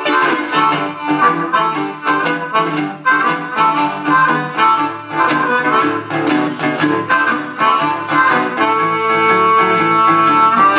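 Downhome acoustic blues: a National metal resonator guitar picking a steady rhythm under a blues harmonica played into a hand-held microphone. Near the end the harmonica holds one long high note.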